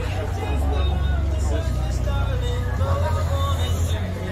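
Several people talking at once around the microphone, with a steady low rumble underneath.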